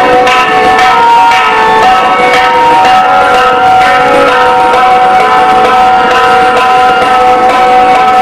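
Tabla solo: rapid strokes on the tabla pair, with the tuned right-hand drum ringing, over a harmonium playing a melodic accompaniment (lehra) of held and shifting notes.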